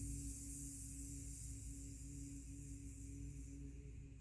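A woman humming a long, steady buzz on one low pitch, bumblebee breath (bhramari) in a yoga pose, slowly fading as her breath runs out.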